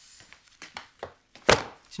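A few faint light taps, then a heavy stack of magazines dropped onto a desk with one loud thump about one and a half seconds in.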